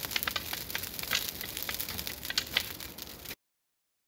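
Forest fire burning through undergrowth, crackling with many sharp pops over a steady hiss. It cuts off suddenly a little after three seconds in.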